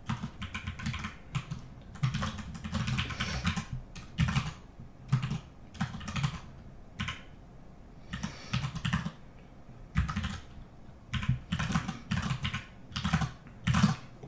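Computer keyboard typing in irregular short bursts of keystrokes with brief pauses between them, as figures are keyed into spreadsheet cells.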